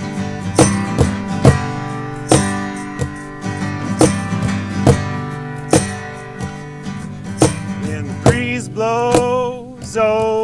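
Two acoustic guitars strummed in the band's song intro, with sharp accents on the beat; a man's singing voice comes in near the end.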